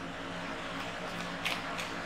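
A steady low background hum, with two faint clicks about a second and a half in.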